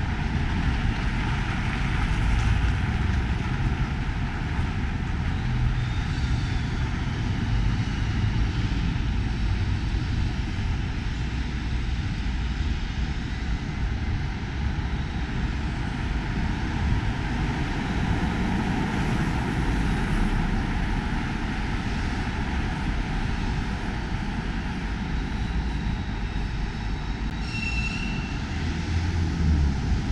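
City street noise heard while walking: a steady low rumble of traffic mixed with wind on the microphone. A short high squeak comes near the end.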